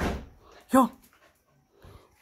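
Small dog at a door giving one short, sharp bark about three-quarters of a second in, after a brief noisy burst at the start.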